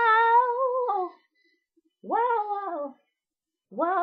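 A woman singing a cappella: a long held note with a slight waver that breaks off about a second in, then two shorter notes that each slide downward, one about two seconds in and one near the end.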